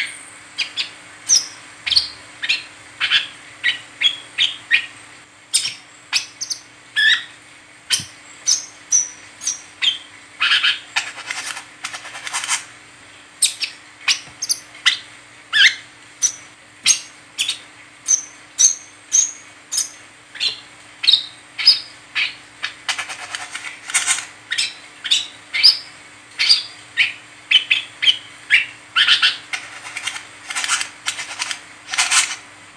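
Brown-throated sunbird (kolibri kelapa) in its 'ngeriwik' chattering: a long run of short, sharp, high chips and twitters, about one to two a second with brief busier spells.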